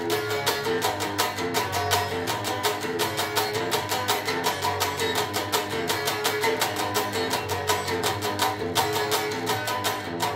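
Telecaster-style electric guitar strummed in a fast, steady rhythm, playing the chords of a punk-pop song.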